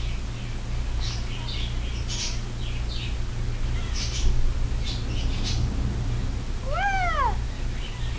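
Soft clicks and scratching from fingers working a plastic toy, then a single cat meow about seven seconds in, rising and falling in pitch.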